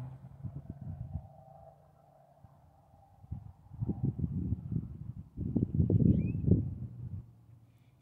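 Wind buffeting the microphone in gusts: irregular low rumbling, quiet for a moment about two seconds in, then stronger from about three seconds and loudest in the second half.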